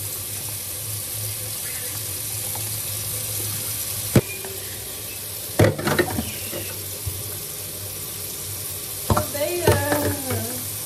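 Kitchen tap running steadily into a sink, with a few sharp knocks of things handled under the water about four seconds in, just under six seconds in, and near the end.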